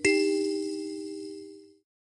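A single bell-like chime, the closing sting of the video, struck once: several clear tones ring together and fade away, then cut off shortly before the end.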